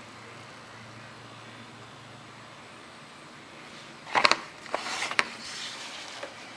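Faint steady room hum, then a quick cluster of sharp clicks and knocks about four seconds in and a couple more about a second later: handling noise of objects on a tabletop and the camera being moved.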